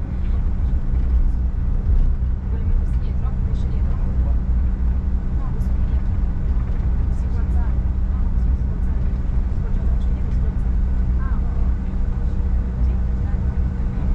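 Cabin noise of a Bombardier CRJ1000 taxiing: steady low rumble from its rear-mounted jet engines and rolling airframe, with a steady hum and no rise in power.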